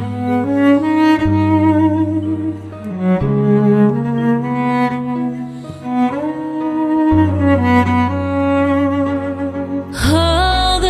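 Cello playing a slow, lyrical melody with vibrato over sustained low notes, with no singing. At the very end the music cuts abruptly to a different piece.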